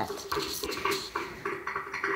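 Food processor running, with a choppy, uneven pulsing about four times a second over a steady motor tone.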